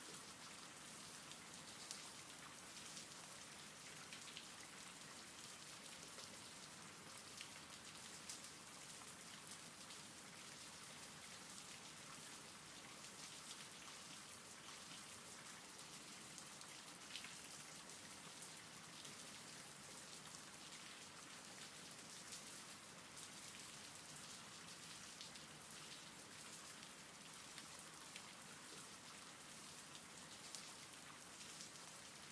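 Faint, steady rain, with scattered single drops ticking through it.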